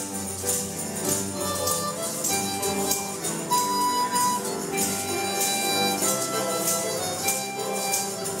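Church praise band playing an upbeat gospel song, with children shaking tambourines and jingle sticks in time; the bright jingles land on a steady beat over the sustained instrumental notes.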